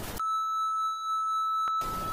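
Television static hiss, cut off a moment in by a steady, high-pitched test-tone beep of the kind played over colour bars. A sharp click comes near the end, then a short burst of static returns.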